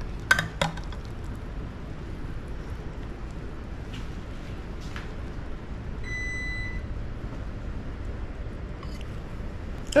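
A metal serving spatula clinks twice against a ceramic baking dish just after the start as a square of casserole is cut and lifted out, with fainter taps a few seconds later. About six seconds in, a single steady electronic beep lasts under a second, over a low steady room hum.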